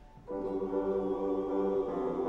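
Mixed church choir singing: after a brief hush, the voices come in together on a held chord about a third of a second in, and move to a new chord near the end.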